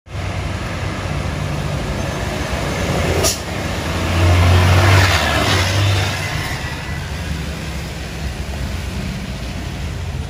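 Trucks running past on a wet road: a steady low diesel engine drone with tyre noise, loudest as a truck passes close about four to six seconds in. A short sharp burst comes just after three seconds.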